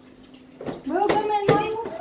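A baby splashing in shallow water in a steel kitchen sink during a bath, with a few sharp splashes under a woman's speech in the second half.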